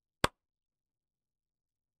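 A single brief click about a quarter second in, against dead silence.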